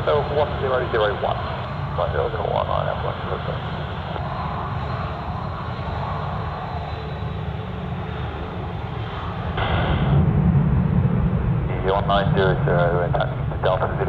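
Airbus A380's four Rolls-Royce Trent 900 engines running at taxi power, a steady low rumble that gets louder about ten seconds in.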